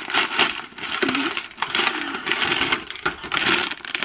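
Wrapping paper rustling and crinkling as a small present is unwrapped by hand. The sound is dense and crackly, with bursts of louder crinkling.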